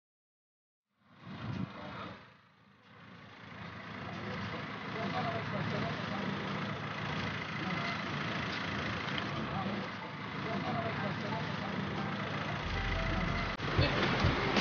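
Steady outdoor background noise with faint, indistinct voices of people around a parked car, fading in after a second of silence.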